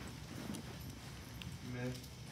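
Quiet room tone with a faint low rumble and scattered light taps, and a brief hummed voice sound near the end.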